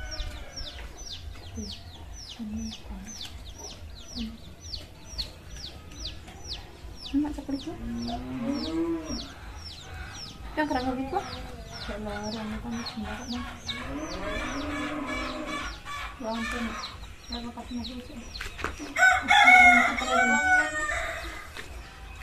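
Chickens clucking and a rooster crowing, over a steady run of high, falling peeps about two or three a second. The loudest calls come near the end.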